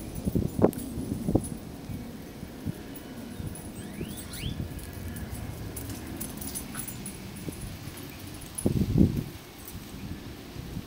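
A small dachshund's quiet snuffling and moving about, with short low bursts about half a second and just over a second in, and a louder cluster near the end.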